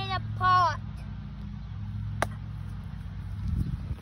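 An iron golf club strikes a ball once, a single sharp click about two seconds in, over a steady low hum. Just before it, right at the start, come two short high-pitched calls.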